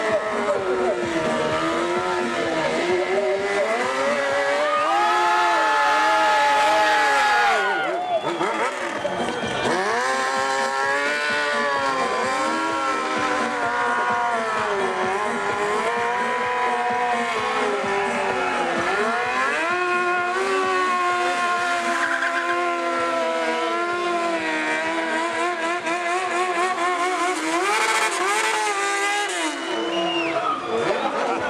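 Motorcycle engines revving up and down again and again during stunt riding, with tyre squeal from burnouts.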